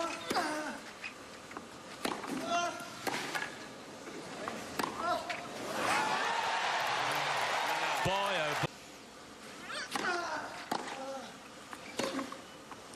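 Tennis rally on a clay court: racket strikes on the ball about a second apart, each with a player's grunt. About halfway in, crowd cheering swells for roughly two and a half seconds and cuts off suddenly, then the racket strikes and grunts of another rally follow.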